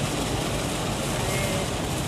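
Steady rushing noise inside a car's cabin driving on a highway in heavy rain, the sound of tyres on the wet road and rain on the car, with a low rumble underneath.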